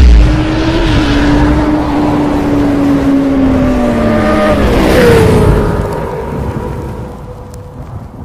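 Motorcycle engine sound effect for an intro: after a loud rush, the engine tone holds and slowly drops, then sweeps up again about five seconds in and holds before fading away near the end.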